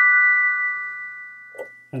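Digital keyboard playing piano tones: the closing chord of the piece is held, ringing as several steady notes that fade away slowly over about two seconds.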